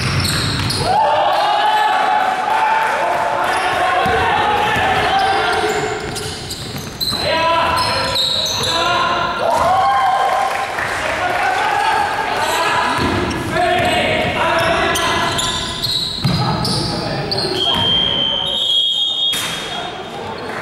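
Indoor basketball game in a large, echoing gym: players' voices calling out over the ball bouncing on the hardwood floor. A steady high tone sounds near the end, typical of a referee's whistle.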